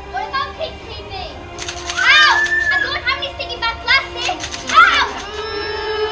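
Several children shouting and calling out on stage, in loud, rising and falling bursts, with some music underneath.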